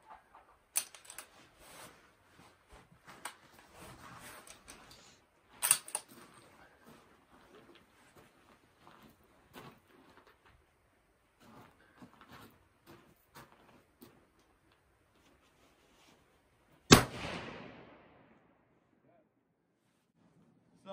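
A single rifle shot from a Tikka T3x TAC A1 in 6.5 Creedmoor, fired from a cold barrel, comes near the end as the loudest sound, with a short echo dying away over about a second. Earlier there are two fainter sharp cracks and scattered small clicks and knocks.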